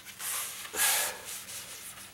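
Gloved hands rubbing and sliding over a linoleum floor, a few short scuffing strokes, the loudest about a second in.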